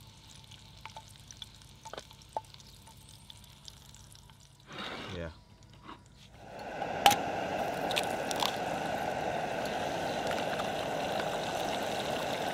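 A few light clicks of a knife on a wooden cutting board. About six and a half seconds in, an egg goes into a hot oiled frying pan and starts frying with a steady sizzle, with a sharp click just as it begins.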